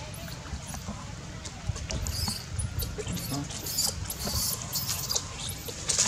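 Baby macaque giving a series of short, very high squeaks, coming thickest in the middle.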